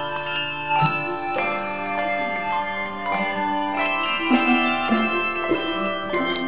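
Handbell choir playing a piece: chords of handheld bells struck together, their tones ringing on and overlapping, with new strikes about every second.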